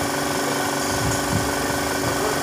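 A motor running steadily with a fast, even pulsing hum.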